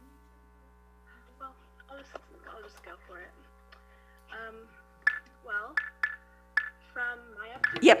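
A remote participant's voice coming through a video-call link, faint and garbled, getting somewhat louder in the second half, over a steady hum of tones.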